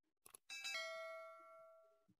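Two-note electronic chime, a doorbell-like ding-dong, that rings and fades away over about a second. It is a notification sound effect of the kind laid over a subscribe-reminder banner, and it comes just after two faint clicks.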